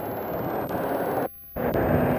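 Steady road-traffic and wind noise on the microphone. About a second and a quarter in it drops out for a moment, where the recording cuts to a new shot, then resumes.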